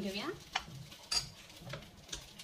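Metal ladle scraping and knocking against a metal pot while scooping out thick pav bhaji, with a couple of sharp clinks about half a second and a second in.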